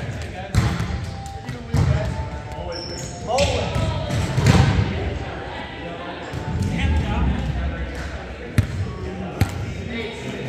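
Players' voices chatting and calling out in a large gym, with several separate sharp thumps of a ball bouncing on the hardwood floor, the loudest near the end.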